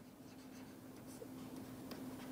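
Faint scratching and light taps of a stylus writing on a pen tablet, with a low steady hum underneath.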